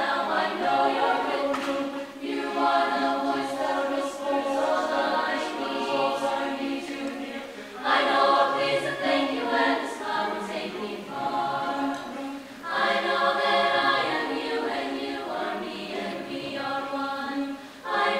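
Mixed chamber choir singing a cappella in several voice parts. The phrases run a few seconds each with brief dips for breath, and the choir comes back in strongly about eight seconds in.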